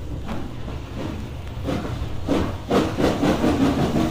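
Steam train running, heard from a vinyl LP recording: a steady rumble with regular beats that grow louder from about halfway through.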